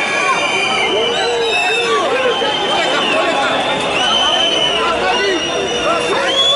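Street protest crowd: many voices shouting and talking at once. Several long, high-pitched whistles sound over the voices, three times.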